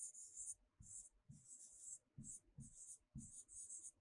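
Faint pen strokes on a whiteboard: a quick run of short scratchy strokes, each with a soft tap of the pen tip, about two a second.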